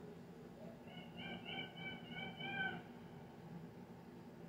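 A faint animal call: a quick run of about six short, high chirps lasting about two seconds.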